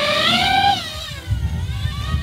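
DJI FPV drone's motors spinning up for take-off: a loud whine that climbs in pitch, then drops back after about half a second, followed by a low rumble of rotor wash.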